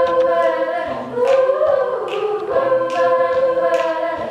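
Student a cappella group singing sustained chords into microphones that shift every second or so. Short beatboxed kick and hi-hat sounds punctuate the voices.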